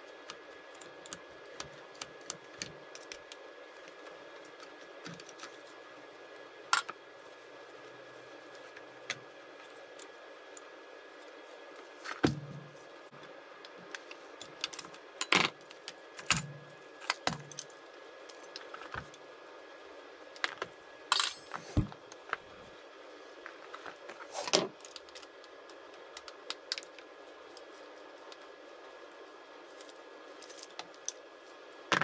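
Scattered metallic clicks, taps and clinks of a hand tool and small parts as an Allen key works the ignition coil screws out of a Poulan 2150 chainsaw, with a few louder knocks in the middle, over faint background hiss.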